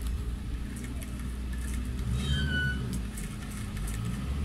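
Multi-tool powerhead's small engine running steadily at a low idle, with a brief higher-pitched tone about two seconds in. The drive shaft to the pole-saw attachment has come loose, so the cutting head does not turn.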